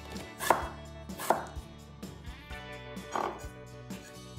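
A kitchen knife chopping through a firm white vegetable onto a wooden cutting board: three chops, about half a second in, just after a second, and a softer, longer one past three seconds.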